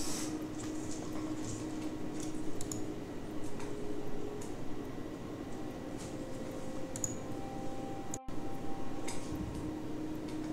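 Scattered faint clicks and rustles of small items being handled, over a faint steady hum, with a brief dropout about eight seconds in.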